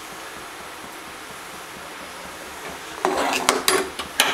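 Metal ladle stirring thick rice porridge in an aluminium pressure cooker pot, scraping and clinking against the pot's sides in a quick run of strokes that starts about three seconds in.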